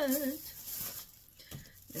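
Tissue-paper wrapping rustling faintly as it is handled, dying away about a second in.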